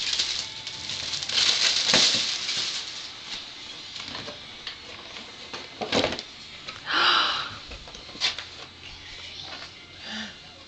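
Shiny gift wrap crinkling and rustling as a present is torn open, with the loudest crinkling bursts a second or two in and again about seven seconds in, and a brief knock as the cardboard gift box is handled.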